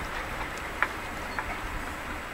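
Steady low background noise of a small cabin, with a few faint ticks.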